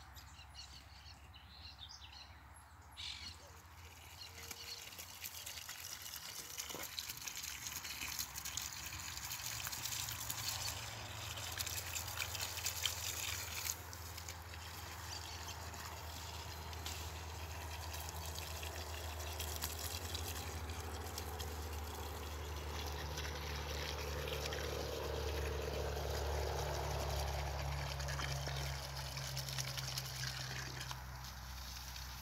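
Water from a garden hose pouring into freshly dug planting holes around banana seedlings: a steady splashing trickle that starts about three seconds in. A low rumble grows under it in the second half.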